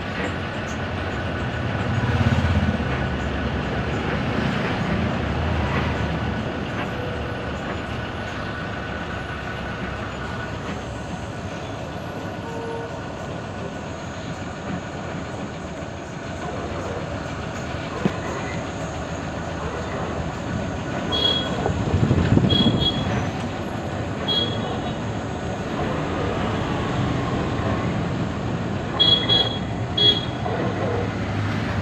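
Cabin noise inside a moving bus: a steady engine and road-noise drone. It swells into a heavier low rumble about two seconds in and again a little past twenty seconds. A few short, sharp rattles come near the end.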